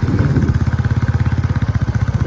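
Motorcycle engine running steadily, close to the microphone, with rapid, even firing pulses throughout.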